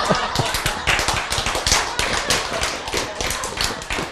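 A small audience clapping, a dense run of quick claps that thins out near the end.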